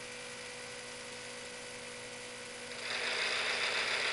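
A steady low hum, then about three seconds in the Visible V8 model engine starts turning slowly and a louder, even rattly running sound comes in. The rattle is the dry cylinders and pistons on first start-up, which the builder expects to go away as lubricant works in.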